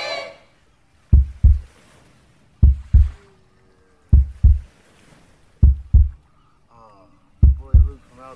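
Heartbeat sound effect: slow, low double thumps, a lub-dub pair about every second and a half, five pairs in all. A faint voice comes in briefly near the end.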